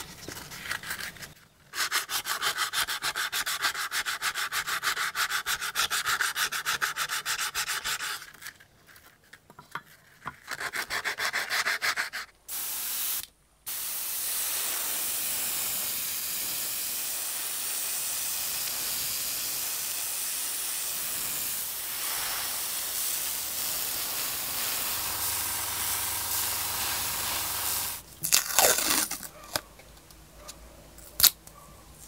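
Abrasive paper rubbing on a metal lure blank in quick back-and-forth strokes, in two spells, followed by a long steady hiss and a few sharp clatters near the end.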